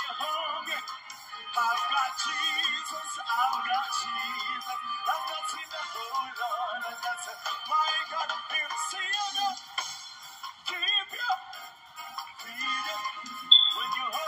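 A man singing a live gospel song with band accompaniment, played back through a laptop's speakers, so it sounds thin and tinny with almost no bass.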